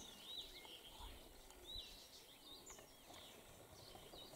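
Near silence outdoors, with faint chirps of small birds now and then.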